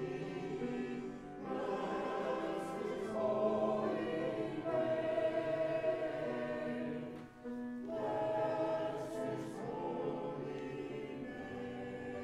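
Mixed church choir of men's and women's voices singing, with a brief break between phrases about a second in and another about seven seconds in.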